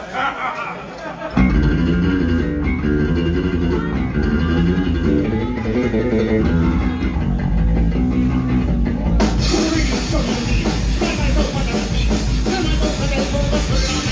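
Live punk rock band playing: electric guitar, bass guitar and drum kit come in loud and hard about a second in. The sound turns brighter about nine seconds in.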